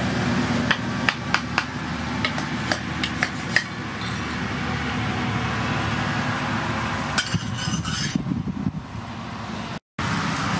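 Sharp metal-on-metal clinks and taps, about eight in quick succession over the first four seconds, then a short run of quick ticks about seven seconds in, as smithing tools and a forged blade are handled at an anvil. A steady low hum runs underneath.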